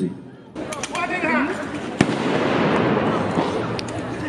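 A single sharp bang about two seconds in, a blank gunshot or pyrotechnic charge in a mock battle, after a few smaller pops and a man's shout. A dense rushing noise follows it and carries on.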